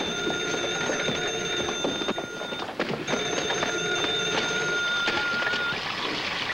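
Telephone bell ringing: two long rings of about three seconds each, separated by a short break.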